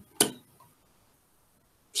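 Near silence, broken once about a fifth of a second in by a single brief, sharp click-like sound that dies away quickly.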